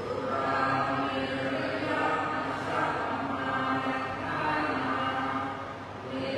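A group of voices chanting together in unison, Buddhist-style, with long drawn-out syllables held at a steady low pitch.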